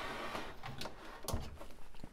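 Handling noise from a plastic-cased CRT monitor being turned around on its stand on a workbench: light rubbing and scraping with a few clicks, and a sharp knock a little past the middle.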